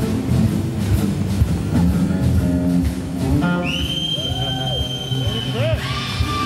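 Live rock band of electric guitars, bass and drums playing a jam, with drum hits throughout. About halfway through, a high sustained note with pitch bends rises over the band.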